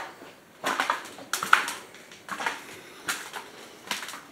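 Footsteps crunching over debris on a floor: four uneven steps, each a short gritty crunch, under a second apart.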